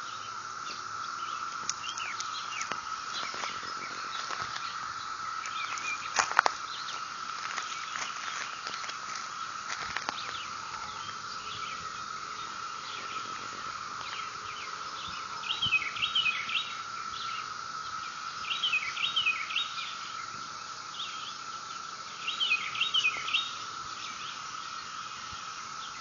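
Outdoor ambience: a songbird calls in three short bursts of rapid chirps, about midway, a little later and near the end, over one steady high-pitched drone.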